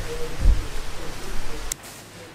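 Rain falling, heard as a steady noisy hiss over a low rumble, with a low thump about half a second in. A sharp click comes near the end, and the sound drops away after it.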